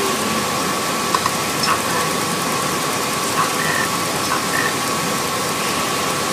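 Steady hiss-like background noise with a faint constant hum and a few faint small clicks.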